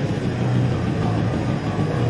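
Death-thrash metal band playing live: a heavy, low distorted guitar and bass wall with drums, loud and unbroken.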